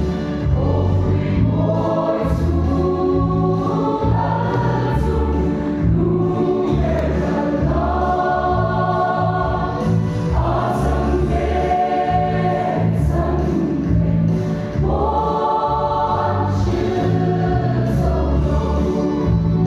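A large mixed church choir of men and women singing a hymn in harmony, with a steady low accompaniment beneath. The sung phrases swell and break every couple of seconds.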